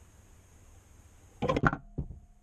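The orange plastic door of a homemade tilting PVC mouse trap dropping shut over the pipe mouth. It lands about one and a half seconds in as a quick rattle of several knocks, followed by a single click. The dropped door is the sign that the trap has tipped and closed.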